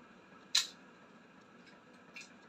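A single short, sharp click about half a second in, over faint room tone.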